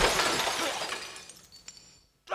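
The final crash cymbal and chord of a heavy metal song ringing out and fading away over about a second and a half, with a faint click near the end.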